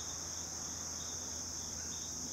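Steady high-pitched chorus of insects.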